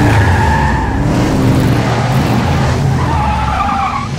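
Muscle car engine running hard with a deep rumble while its tyres squeal in a skid, once at the start and again about three seconds in, leaving tyre smoke.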